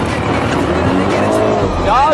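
Engines of two ATVs (quad bikes) running as they drive side by side on a dirt track, one pulling ahead, under background music and a voice near the end.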